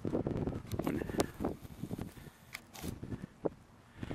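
Quiet outdoor background with faint rustling and a few short clicks, fading to near silence in the second half.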